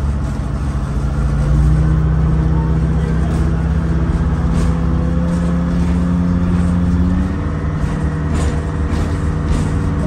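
Electric trolley car's traction motors and gears whining from inside the car as it moves off, the whine rising slowly in pitch and stepping up about seven seconds in, over a low rumble of the running gear.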